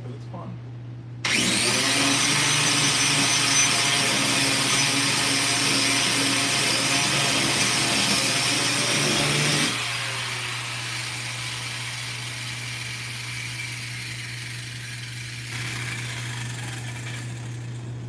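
A handheld power tool whirring at high speed as it cuts and shapes the plastic rear bumper around the exhaust tip. It starts about a second in and runs loud, then drops to a quieter whir from about ten seconds until near the end, over a steady low hum.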